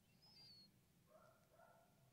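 Near silence, with a faint brief high chirp about a third of a second in and a few faint tones a little after the middle.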